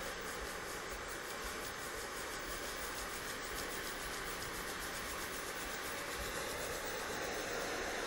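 Steady hiss of a spinning hero's engine jetting steam from its arms while a propane torch flame heats its water-filled sphere.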